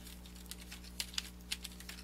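Computer keyboard being typed on: a handful of separate keystroke clicks, spaced irregularly, over a faint steady electrical hum.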